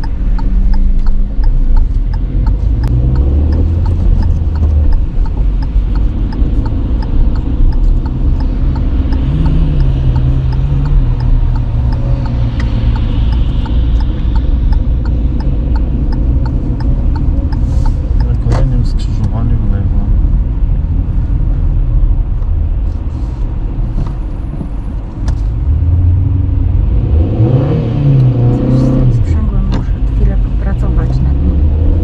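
Interior noise of a moving car: steady engine and road rumble inside the cabin. It eases briefly as the car comes to a stop at a traffic light, then the engine picks up again as the car pulls away near the end.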